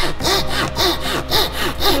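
Coping saw cutting through a thin wooden board with quick, even back-and-forth strokes, about three a second, each stroke giving a rasping hiss.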